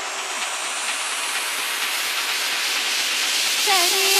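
White-noise riser in an electronic dance track: a steady hiss that slowly swells and climbs in pitch as a build-up. A pitched vocal-like line comes back just before the end.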